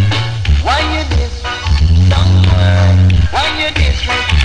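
Reggae tune played loud on a sound system, with a heavy bass line that pauses briefly now and then and notes that slide up and down in pitch at intervals.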